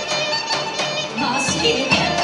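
Live traditional Greek folk dance music: a sustained melody instrument playing over regular beats of a large drum.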